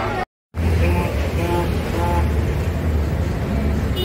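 A short cut to silence, then a steady low rumble with faint voices over it.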